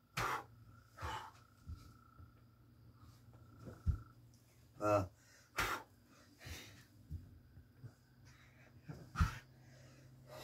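A man's heavy, sharp exhalations and short grunts while exercising, coming about every second or two, with a few dull thumps from his body-weight movement on a carpeted floor.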